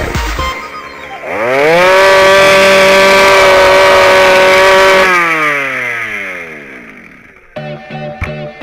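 Jawa 50 moped's single-cylinder two-stroke engine revved up hard about a second in and held at high revs for about three seconds. It then winds down slowly, falling in pitch and fading.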